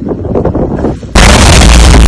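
The blast wave of a huge explosion arriving about a second in: a sudden, extremely loud boom that overloads the phone microphone and stays at full level.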